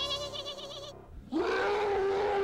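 Music fades out, and about a second and a half in a long King Kong roar begins, rising briefly in pitch and then held steady.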